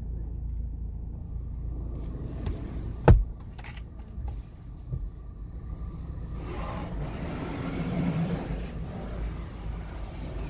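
The car's low, steady rumble heard from inside its cabin in an automatic car wash bay. A single sharp knock comes about three seconds in. From about the middle, a rushing noise from the wash machinery swells and then eases near the end.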